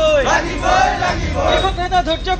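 A small group of men shouting protest slogans in Assamese together, their voices loud and raised.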